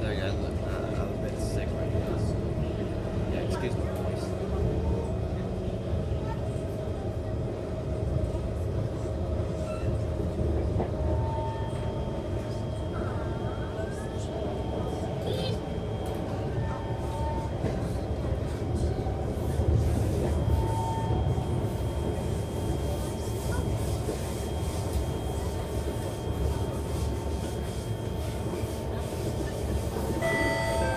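Inside a Singapore MRT East-West Line train carriage as it runs along the track: a steady low rumble of wheels and running gear, with short thin whining tones that come and go.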